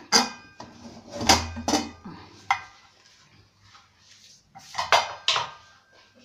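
A cooled-down pressure cooker being opened: its metal whistle weight and lid knock and clank, ringing briefly. There is a cluster of clanks in the first two seconds, another about halfway, and two more near the end.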